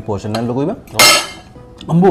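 Metal cutlery clinks sharply once against a ceramic plate about a second in. Short bursts of a man's voice come before and after it.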